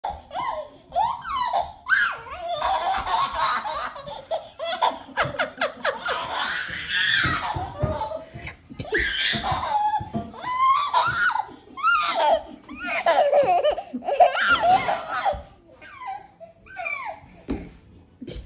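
Laughter in many short bursts, a baby's laughing among it, with a quieter spell near the end.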